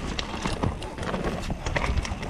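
Mountain bike rolling fast down a rough dirt singletrack: a steady tyre rumble with frequent irregular clacks and rattles as it runs over roots and stones.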